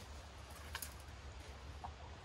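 Quiet outdoor background with a steady low rumble. One light click sounds about a third of the way in as the wooden-framed wire gate is set between its posts, and a brief faint chirp comes near the end.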